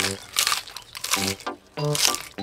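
Cartoon crunching sound effect of a tortoise munching a crisp lettuce leaf: a few quick crunchy bites in the first second.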